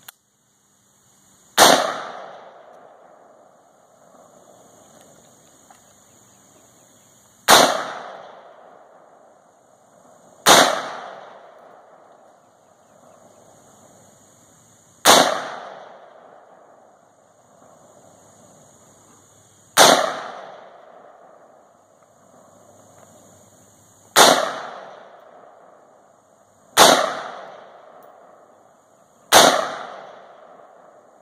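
Eight single shots from an AR-15-style rifle, fired slowly at irregular intervals a few seconds apart. Each shot is followed by an echo that fades over a second or two.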